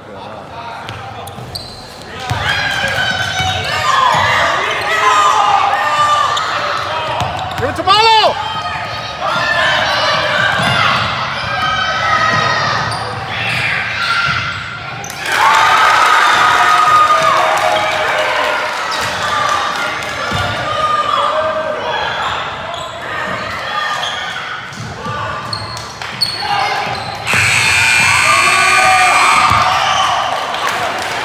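Indoor basketball game echoing in a large gymnasium: a basketball bouncing on the hardwood court under players and spectators shouting. There is a brief squeak about eight seconds in, and louder shouting and cheering near the end as a basket is scored.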